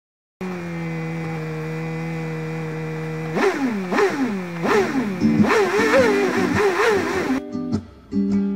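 An engine idling steadily, then revved about seven times in quick succession, its pitch jumping up and falling away each time. Acoustic guitar strumming starts near the end.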